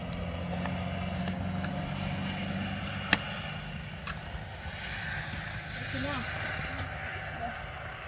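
A steady low engine-like hum throughout, with a single sharp click about three seconds in.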